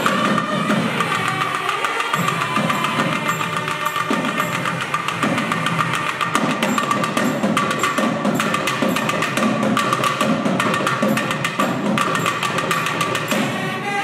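Thavil drums played in a fast, dense rhythm, with nadaswaram double-reed pipes holding a steady note underneath: South Indian periya melam temple music.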